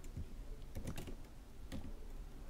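A few faint, separate keystrokes on a computer keyboard as a line of code is typed.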